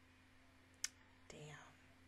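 Near silence broken by a sharp click just before a second in, then a short breathy murmur from a woman at a close microphone, falling in pitch.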